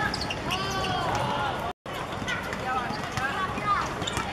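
Footballers shouting and calling to each other on the pitch, with short thuds of the ball being kicked and feet on the hard surface. The sound drops out completely for a moment a little before halfway.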